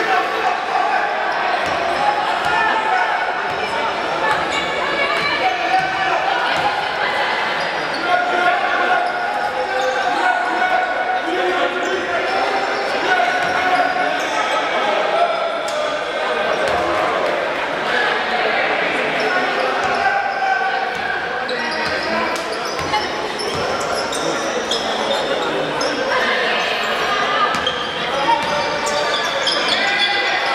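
A basketball being dribbled and bouncing on a wooden court floor during live play, with voices calling out in a large indoor hall.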